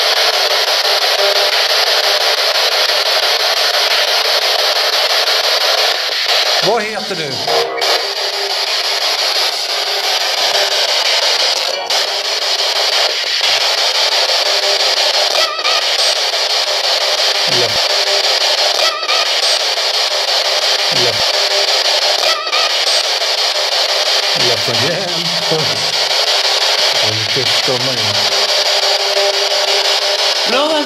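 P-SB11 spirit box sweeping through radio frequencies: a loud, steady static hiss broken by clicks and brief snatches of garbled voice, one of which the investigators take for a voice calling "hjälp" (help).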